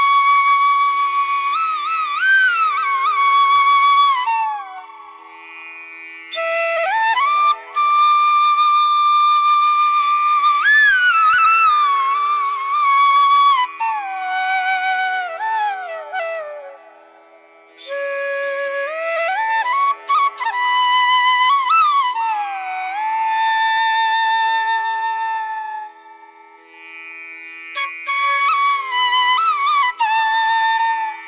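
Background instrumental music: a flute-like melody in slow phrases with pitch glides and ornaments, over a steady drone, pausing briefly between phrases.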